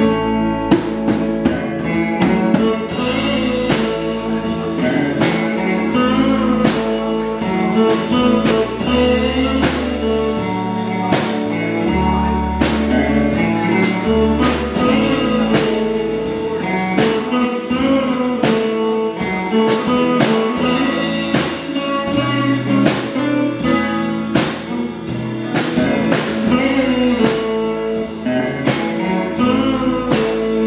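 Live blues band playing on electric guitars and drum kit with a steady beat, and a woman singing.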